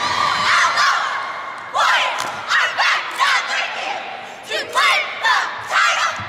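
Cheerleading squad shouting a cheer in unison: a quick series of short, high-pitched group shouts, several a second, with pauses between phrases.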